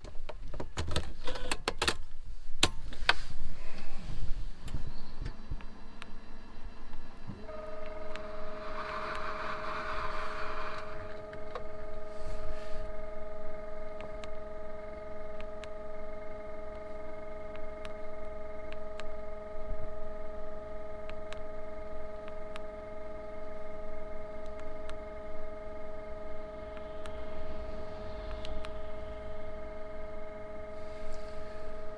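Inside a Mercedes Sprinter minibus cab: a few clicks and knocks, then from about seven seconds in a steady hum of several tones starts and holds as the vehicle's electrics come on. Occasional light clicks follow as the digital tachograph's buttons are pressed.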